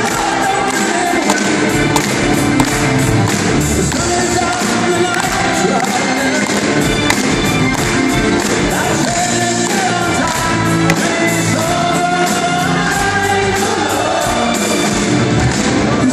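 Live band playing an up-tempo rock song in a concert hall, with a steady beat.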